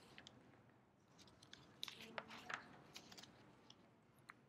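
Near silence: room tone with a few faint, scattered clicks and rustles.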